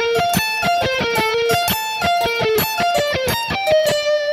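Ibanez electric guitar playing a quick run of single picked notes in a repeating arpeggio pattern over G minor, built on a B-flat major shape to give a G minor nine sound, and ending on a held note near the end.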